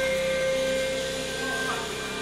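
Simasa HandSafe table saw running freely, its motor and spinning circular blade giving a steady whine.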